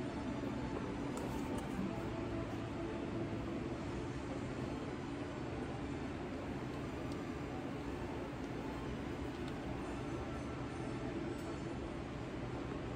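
A steady mechanical hum with a constant hiss, even throughout, with no distinct knocks or clicks.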